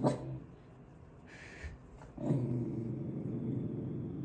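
Dog growling low and steady at horses passing outside the window, with one sharp bark-like sound at the start; the growl breaks off and starts again about two seconds in.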